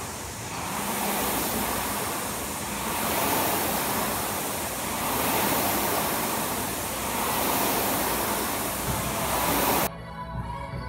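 Concept2 indoor rowing machine's air-resistance flywheel fan whooshing as it is rowed, swelling and easing with each stroke about every two seconds. The sound cuts off suddenly just before the end.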